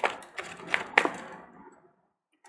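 A tarot deck being shuffled by hand: about four sharp snaps of card against card within a second.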